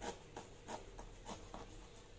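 Knife blade scoring and slitting the tough, spiky husk of a durian along its seam, heard as a series of short scratching strokes.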